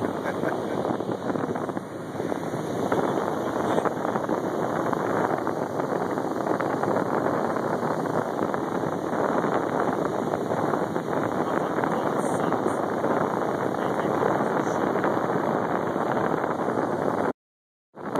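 Steady rushing wind noise buffeting the phone's microphone, cutting out briefly near the end.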